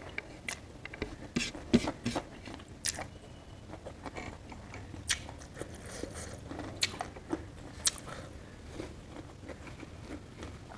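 A person chewing a mouthful of rice and boiled vegetables, with irregular small clicks and wet mouth sounds. Fingers gather rice on the plate between bites.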